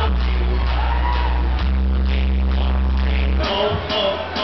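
Loud amplified live music with heavy sustained bass notes under a steady beat; the bass cuts out about three and a half seconds in.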